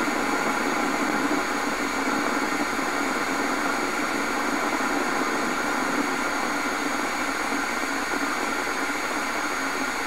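Homemade Tesla-style coil running steadily while charging a 12-volt battery: a loud, unbroken static hiss with a buzz and several steady tones laid through it.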